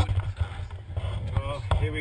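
Hands handling a helmet-mounted GoPro, rubbing on the helmet and camera housing, which gives a low rumble on the camera's microphone that starts with a click, with muffled voices behind it.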